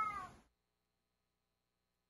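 A short, high-pitched vocal cry that rises and falls in pitch, cut off abruptly about half a second in, followed by dead digital silence.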